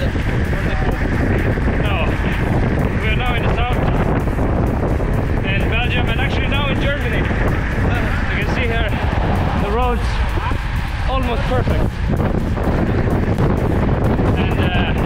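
Steady, heavy wind noise on the microphone from riding a road bike at speed, with a rider talking over it.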